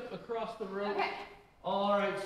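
People talking: conversational speech with a short pause about three-quarters of the way through, and no other sound standing out.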